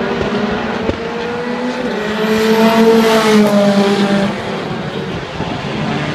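Racing car engine at high revs passing the trackside, its note rising as it approaches, loudest about three seconds in, then dropping away as it goes past. A single knock sounds just under a second in.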